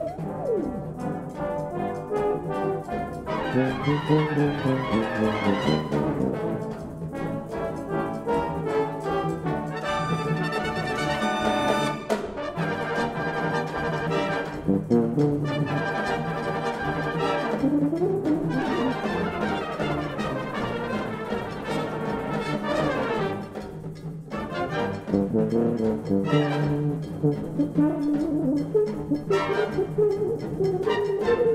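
Brass band playing a fast Latin number, with a solo tuba over the band and the cornet section playing.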